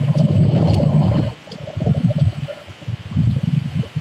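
A man's low, muffled voice talking in bursts of about a second, with the words too dull to make out, inside a car cabin.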